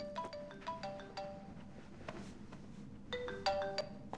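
Mobile phone ringtone for an incoming call: a short marimba-like melody of quick notes, played twice with a pause between.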